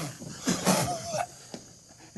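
A hard blow of breath at Bunsen burner flames dying away, failing to put them out, followed by short breaths and brief vocal sounds from the men, one of them wavering, and a single small click about a second and a half in.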